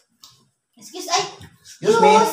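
Mostly voices: a short child's vocal sound about a second in, then a spoken word near the end, with near silence before them.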